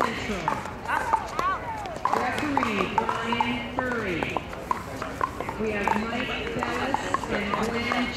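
Voices talking, with the irregular sharp pock of pickleball paddles hitting balls in ongoing play at other courts.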